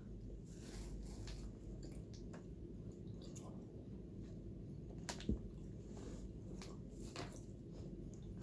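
Faint chewing and soft, sticky mouth clicks of people eating Turkish delight, with one sharper click about five seconds in.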